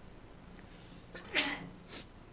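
A man's short, stifled sneeze about one and a half seconds in, after a near-quiet pause.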